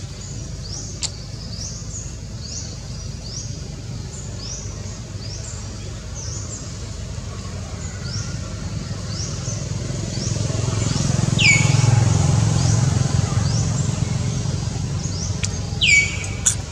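A bird chirping over and over, short high notes about two a second, with two falling whistled calls in the second half. Under it runs a low rumble like distant traffic that swells a little past the middle.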